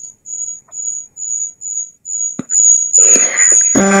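A high-pitched insect chirp repeats about three times a second and turns into a steady trill about two and a half seconds in. A voice starts near the end.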